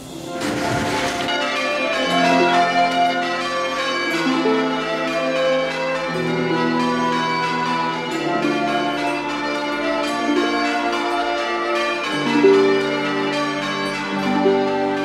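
Church bells being change-rung: several bells struck in turn, their tones overlapping in a continuous peal.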